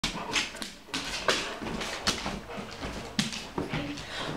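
Golden retriever moving about the room, with irregular sharp knocks and clicks.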